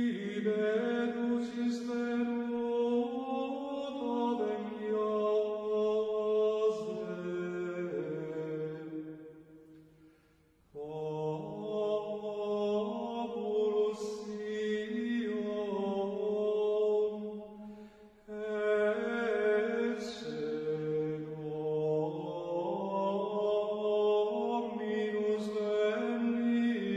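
Gregorian chant: voices singing one melody line together in long phrases of held notes that move up and down in small steps. There are two short breaks between phrases, about ten and eighteen seconds in.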